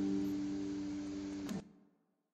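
Acoustic guitar's final chord ringing out and slowly fading, ending in a short click about a second and a half in, after which the sound stops abruptly.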